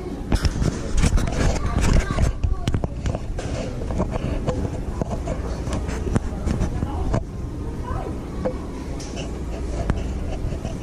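Close handling noise from a body-worn camera: clicks, knocks and clothing rubbing, densest in the first few seconds, while a helmet strap is being adjusted. Indistinct voices and a low background rumble run underneath.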